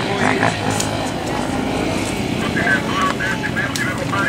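Enduro motorcycle engines running steadily nearby, with people talking over them in the second half.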